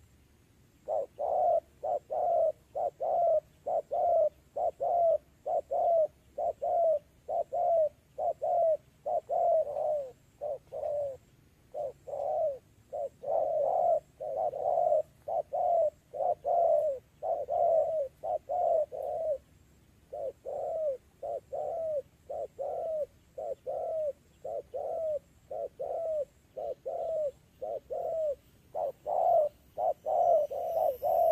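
Spotted dove cooing: a long, rapid series of short coos, each falling slightly in pitch, a little over two a second, broken by a couple of brief pauses.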